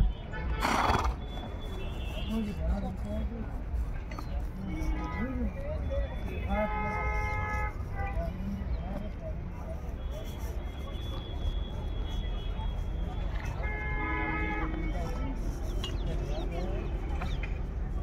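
Busy horse-fair background of voices and music, with a horse whinnying twice, each call about a second and a half long. A brief burst of noise comes just after the start.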